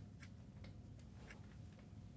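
A clock ticking faintly, about once a second, over a low steady room hum.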